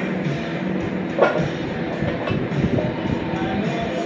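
Music playing over the rumble of a loaded barbell's plates rolling across the garage floor, with one short louder sound about a second in.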